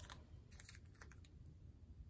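Near silence, with a few faint, soft clicks of washi tape being handled and pressed down onto paper on a cutting mat.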